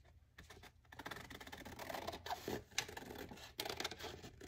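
Scissors cutting through a paper napkin glued to a scrap of paper: a quiet run of snips and paper rustle starting about a second in.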